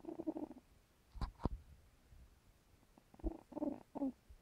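Old cat snoring in her sleep: a rattly snore at the start and another about three seconds in, with two short knocks in between.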